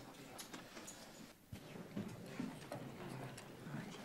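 Faint room sound in a large chamber: low, scattered murmuring voices and a single small click about a second and a half in.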